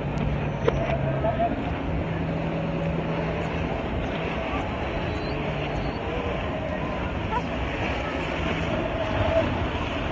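Steady rumbling din of a large indoor hall, with faint distant voices in it.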